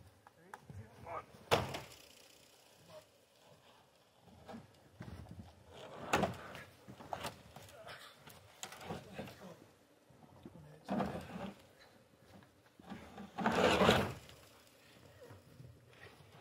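Freshly sawn white pine slabs being handled and set down: irregular wooden knocks and thuds, a sharp knock about a second and a half in and a longer, louder clatter near the end.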